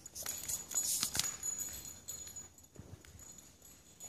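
Scattered light clicks and jingling as a dog moves about on a hard floor, the busiest stretch about a second in.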